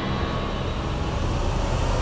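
Dramatic TV-serial background score: a sustained low rumbling drone without a beat, holding the tension.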